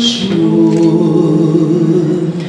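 Two women singing a duet into microphones, holding long notes in harmony, moving to new notes about a quarter second in.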